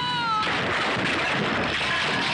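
A cat's yowl, an arched, falling meow that ends about half a second in, used as a film sound effect, followed by a dense noisy clatter of crashing and scuffling.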